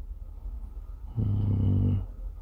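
Low street rumble, then a steady, low, hummed "hmm" from a man's voice for most of a second near the end.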